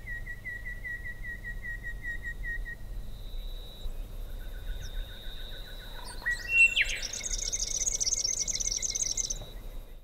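Wild birds calling over a thin, steady high tone: a run of quick repeated notes for the first few seconds, a louder call about six and a half seconds in, then a fast high trill near the end.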